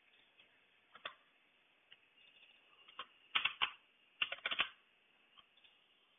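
Scattered keystrokes on a computer keyboard: single clicks about one and three seconds in, then two quick runs of several keys in the middle.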